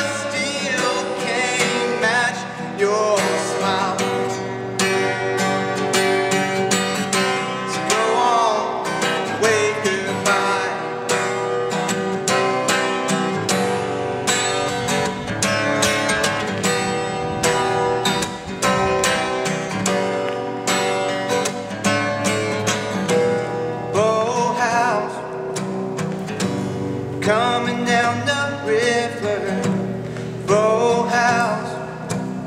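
Steel-string acoustic guitar strummed and picked in a steady rhythm, an instrumental passage of a folk song. A man's voice joins without words near the start, briefly around eight seconds in, and again over the last few seconds.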